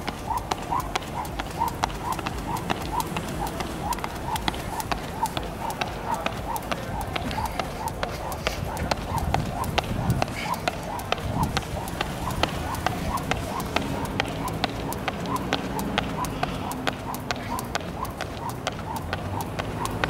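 Jump rope skipping on a concrete court: the rope and sneakers strike the ground in a steady, even rhythm of about two to three sharp slaps a second.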